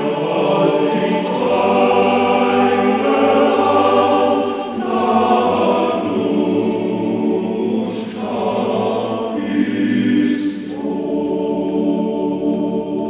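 Music: a choir singing long held chords that shift every few seconds.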